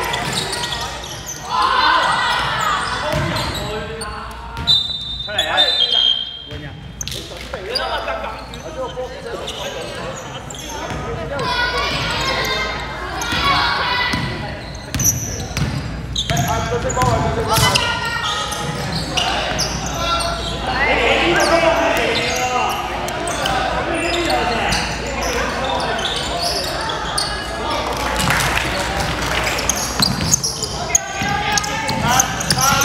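A basketball dribbled and bouncing on a hardwood gym floor during a game, among voices shouting from players, coaches and spectators, all echoing in a large sports hall.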